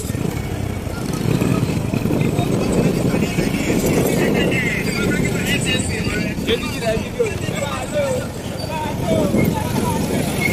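Motorcycle running along a rough dirt road, a steady, rough rumble of engine and road noise, with indistinct voices over it.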